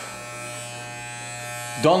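Corded electric hair clippers running with a steady, even buzz.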